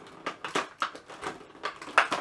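Clear plastic toy blister packaging being pulled and pried at by hand, giving a run of crackling clicks and a sharp snap at the end.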